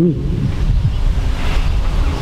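Wind buffeting a handheld microphone outdoors, a steady low rumbling noise.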